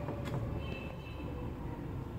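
Light handling of a wooden easel's hinged support arm: a couple of faint clicks near the start, over a steady low rumble.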